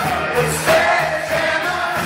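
Live rock band playing, with singing; a long held note comes in about halfway through.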